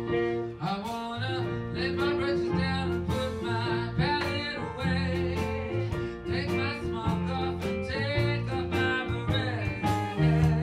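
A man singing a song into a microphone, with live instrumental accompaniment under the voice.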